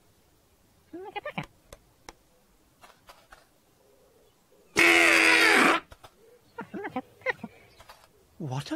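A small toy trumpet blowing a loud, wavering blare of about a second, about five seconds in: an odd sound that the trumpet doesn't usually make. Short squeaky character vocalisations come before and after it.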